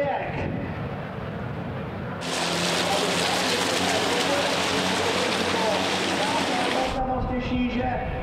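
Turbodiesel race truck passing close to a trackside microphone: a loud rushing of engine and tyres that comes in about two seconds in and cuts off sharply near the end, over a lower race-engine drone.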